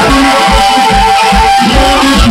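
Live electric blues band: harmonica played through a microphone over electric guitars, with a steady low beat from bass and drums. A single note is held for about a second partway through.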